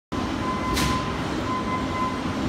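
Factory-floor machinery din: a steady low rumble with a thin high whine running through it, and a short hiss just under a second in.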